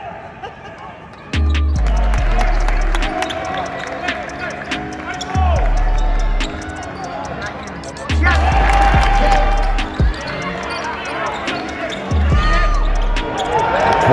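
A rap track with a deep, repeating bass line and rapped vocals comes in about a second in, over the sound of a basketball bouncing on the court.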